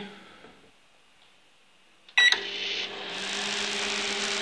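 Near silence, then about two seconds in a microwave oven's button beep and the oven starting up: the steady hum of its high-voltage transformer and cooling fan, with the crackle of electrical arcing near the magnetron.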